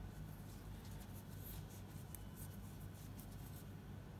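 Faint, irregular clicking and scratching of knitting needles working strips of fabric yarn, over a low steady hum.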